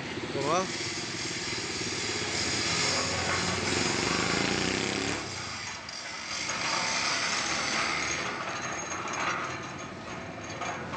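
A small engine running for about five seconds, then a noisier stretch, with voices in the background.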